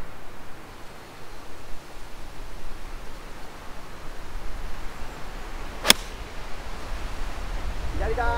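A 7-iron striking a golf ball off the tee: a single sharp, crisp click about six seconds in. Wind rumbles steadily on the microphone throughout.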